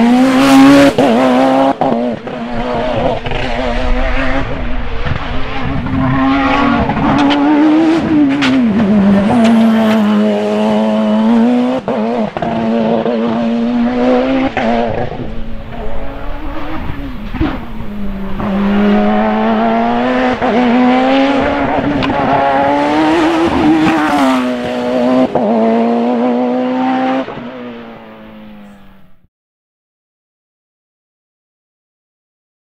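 Open-cockpit sports prototype race car accelerating hard up a hill climb. The engine note rises and drops sharply again and again as it shifts up through the gears, then fades away in the distance near the end.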